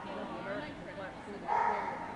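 A dog barks once, about one and a half seconds in, over people talking in the background.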